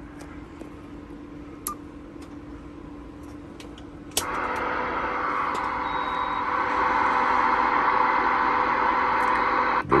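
Stryker SR-955HPC CB radio's speaker giving out steady receiver static hiss. It comes in with a click about four seconds in and grows louder a few seconds later as the knobs are worked; before that there is only a faint low hum.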